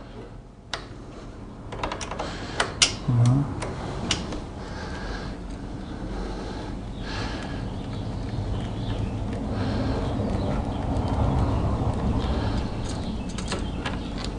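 Screwdriver working the negative terminal bolt of a motorcycle battery to disconnect the cable: a few sharp metallic clicks in the first four seconds, then a steady low noise as the bolt is turned and the cable loosened.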